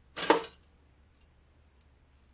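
Pop-up toaster's spring-loaded carriage released: a short rattling clunk with one sharp click. A single faint tick follows near the end.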